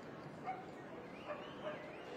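A dog giving three short barks: one about half a second in, then two close together in the second half.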